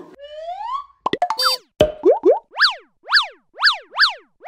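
Cartoon-style sound effects of a logo outro sting: a rising glide, a quick cluster of pops and short tones with a falling swoop, then a row of quick up-and-down zips about two a second.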